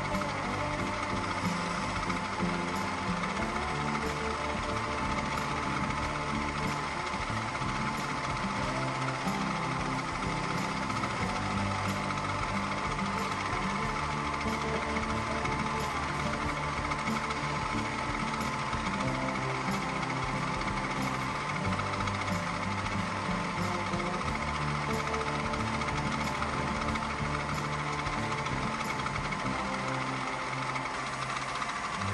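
Wood lathe running steadily while a hand-held turning tool cuts the grooves of a spinning wooden honey dipper, with background music over it.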